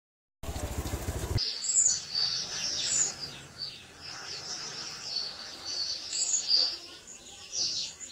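Small birds chirping in the background: many short, high chirps and quick pitch glides over several seconds, fading out near the end. A brief buzz comes just before the chirping starts.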